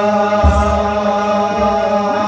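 Ethiopian Orthodox mahelet chant: a group of male cantors chanting in unison on a long held pitch, with a kebero hand drum struck twice, about half a second in and again near the end.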